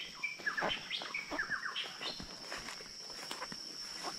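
Forest birds chirping with short whistled and falling notes, busiest in the first two seconds, over a steady high-pitched insect drone. Soft footsteps and brushing through undergrowth add scattered light clicks.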